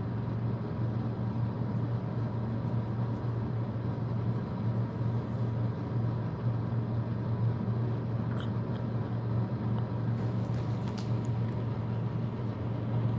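Steady low hum over an even background hiss, with a couple of faint clicks in the second half.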